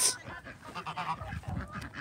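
Domestic gander giving faint, broken honks while agitated and turning aggressive.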